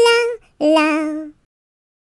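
A high voice singing 'la' on two final notes: a short higher note, then a lower one held with a slight wobble that stops after about a second and a half.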